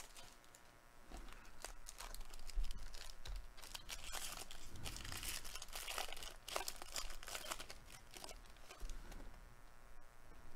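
The crinkly wrapper of a 2022 Bowman Jumbo baseball card pack being torn open and crumpled by hand: a long run of crackles and rips.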